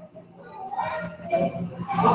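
Faint children's voices talking in the background, starting about half a second in after a brief lull.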